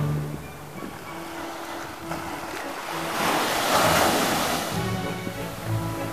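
Small ocean waves breaking and washing up a sandy beach, with one surge of surf swelling about three seconds in and then fading. Background instrumental music plays throughout.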